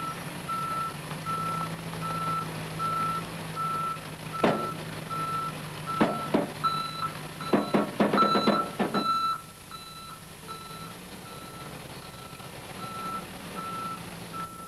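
Truck's back-up alarm beeping steadily, about one and a half beeps a second, while the truck reverses with a flatbed trailer in tow, its engine running low underneath. A run of sharp clunks and knocks comes through the middle.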